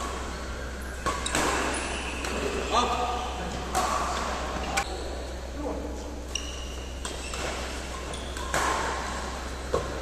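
Badminton rackets striking a shuttlecock in a doubles rally, about seven sharp cracks of strings on the shuttle roughly a second apart, echoing in the hall. Short high squeaks of shoes on the court floor come between the hits.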